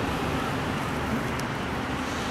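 Steady background noise of road traffic passing nearby.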